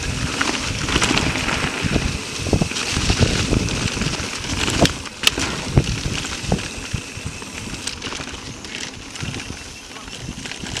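Mountain bike rolling fast along leaf-covered dirt singletrack: a steady rush of tyres through dry fallen leaves and dirt, broken by frequent knocks and rattles from the bike over roots and bumps, the sharpest ones around the middle.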